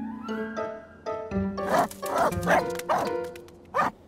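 Cartoon dog barking in a quick run of barks, starting about a second in, over light background music that opens with a falling run of notes.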